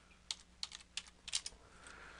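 Computer keyboard being typed on: a handful of faint, separate keystrokes as a short text label is entered.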